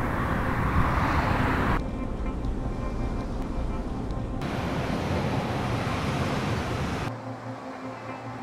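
Road traffic noise from a busy multi-lane road, loudest in the first two seconds, then background noise that switches abruptly about two, four and a half and seven seconds in, all over a steady held music drone.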